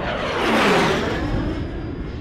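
Single-engine turboprop racer, a turbine Lancair Legacy with a Pratt & Whitney PT6A-42, making a fast low pass: the sound builds to its loudest a little under a second in, its pitch dropping as it goes by, then eases off.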